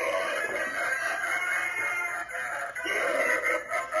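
Spirit Halloween clown animatronic's built-in speaker playing its creepy soundtrack: continuous music with warbling, distorted sounds while the prop moves.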